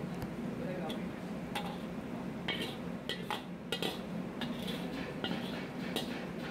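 A metal spatula or ladle scraping and clinking against a metal pan as thick chickpea curry is poured and scraped out into a stainless-steel tray. There are several short scrapes about half a second to a second apart, over a steady low hum.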